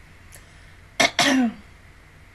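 A woman clearing her throat: two short rough bursts about a second in, the second trailing off with a falling voice.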